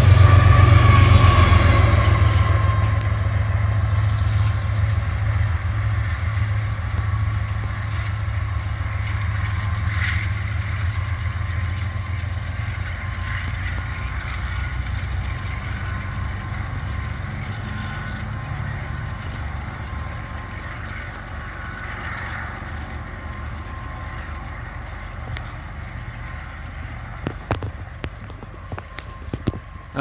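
Union Pacific coal train rolling past on the rails, a deep steady rumble that fades gradually as it goes by and moves away. A few sharp clicks near the end.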